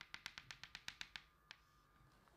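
Chalk tapping against a blackboard: a quick, even run of faint light taps, about nine a second, for just over a second, then a single tap.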